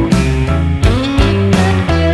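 Background rock music led by guitar, with sustained notes and a steady beat.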